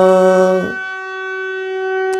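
Harmonium reed note held on a single pressed key, one steady tone. A man's voice sings a held sargam note over it and stops under a second in, leaving the harmonium sounding alone.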